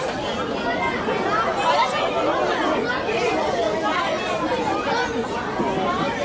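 Background chatter: many voices talking over one another at a steady level, with no single voice standing out.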